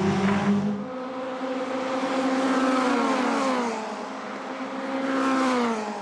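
Several Seven-style open-wheeled race cars passing on track, their engines rising in pitch as they accelerate and falling away as they go by. This happens twice, with a second car or group sweeping past near the end.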